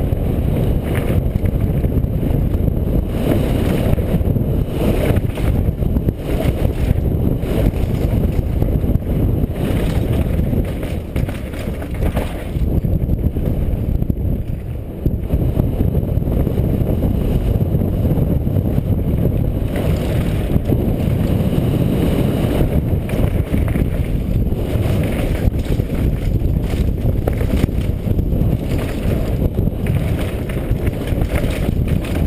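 Heavy wind buffeting on a helmet-mounted camera's microphone, mixed with the rumble and rattle of a downhill mountain bike running fast over a dirt and rocky trail.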